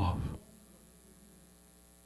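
A man's voice ends on a word, then a faint, steady electrical mains hum with several even tones fills the pause.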